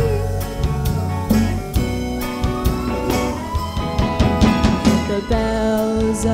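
Live soul-style band playing: drum kit strokes and bass guitar under held keyboard and guitar chords. A girl's held sung note comes back in near the end.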